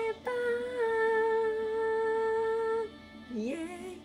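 Idol-pop music video playing from a TV, a female voice holding one long, steady sung note for about two and a half seconds before the music drops away.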